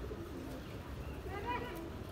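A bird calling over a murmur of distant voices, with a short rising-and-falling call about one and a half seconds in.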